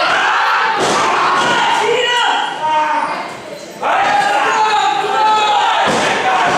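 Wrestlers hitting the canvas of a wrestling ring: a few sharp thuds and slams, mixed with shouting voices, including one long drawn-out yell in the second half.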